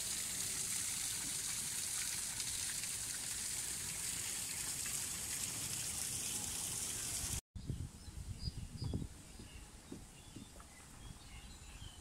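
Small waterfall splashing steadily into a pond, its flow weak. About seven seconds in the water sound cuts off, leaving quieter bird chirps and a few low thumps.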